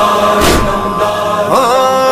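Muharram devotional song in praise of the standard-bearer (alamdar): a sung melody held in long notes, with one percussive beat about half a second in and a new note sliding up and holding near the end.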